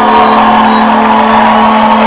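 Live rock band playing a loud, dense distorted wash of guitar and keyboards over one steady low held note, with no singing.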